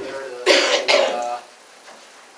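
A person coughing, clearing the throat in two quick, loud coughs about half a second in.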